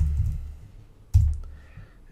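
Clicks from a computer keyboard and mouse as a name is typed into a field and entered, with a sharp click about a second in.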